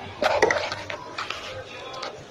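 A voice speaking briefly, with fainter talk after it.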